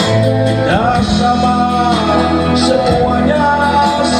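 A live band playing a slow song, with a voice singing over a steady accompaniment that includes guitar.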